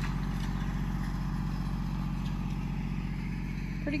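Kubota L2501 tractor's three-cylinder diesel engine running steadily as it pulls a rake down a gravel driveway.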